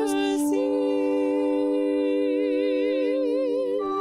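A trio of women's voices holding a long chord in close harmony, with vibrato. The chord is released just before the end.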